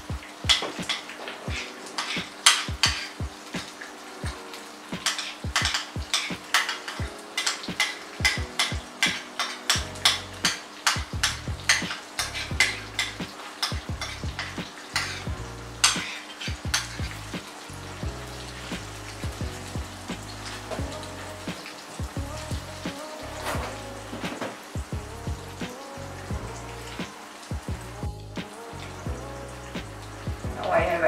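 Stuffed capsicums sizzling in hot oil in a pan, with a metal spoon repeatedly tapping and scraping against a plate and the pan as a chopped onion and tomato mixture is spooned over them. The clicks come quickly for the first half and thin out after that.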